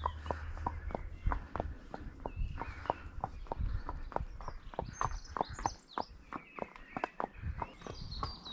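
Barefoot horse's hooves on a tarmac road at a walk: a steady clip-clop of about three hoofbeats a second.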